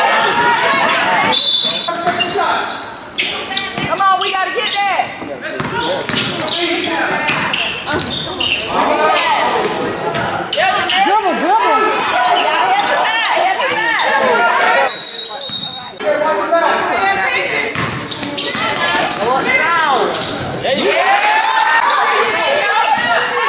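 Live game sound in a school gym: a basketball being dribbled on the hardwood court, with voices of players and spectators calling out throughout. Two short high squeaks, about one and a half and fifteen seconds in, fit sneakers on the floor.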